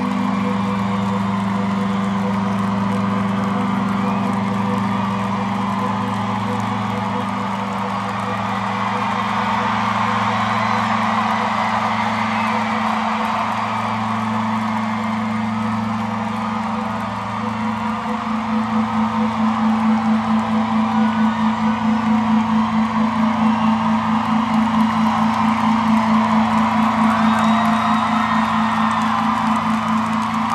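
Arena crowd cheering and whooping over sustained low music that holds steady tones. A bit over halfway through, a pulsing beat of a few pulses a second comes in and the music grows louder.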